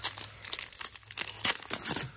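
Foil trading-card pack wrapper crinkling as it is torn open by hand: a run of irregular crackles.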